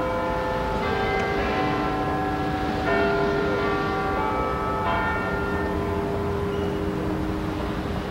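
Large tower bells ringing: a string of struck strokes about a second apart, each note ringing on and overlapping the next.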